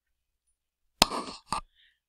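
Dead silence for about a second, then a sharp click and a short breathy rush like a quick intake of breath, with a second, shorter click half a second later.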